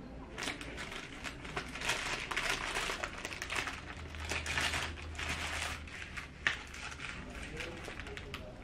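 Foil chocolate wrapper crinkling in irregular bursts as it is handled and folded, with one sharp click near the end.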